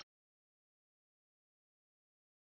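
Near silence: dead, empty audio, with only the last trace of a spoken word cutting off right at the start.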